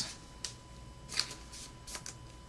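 Trading cards being handled and slid against each other in the hands, giving three brief, faint papery rustles.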